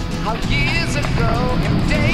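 Background music: a song with a singing voice.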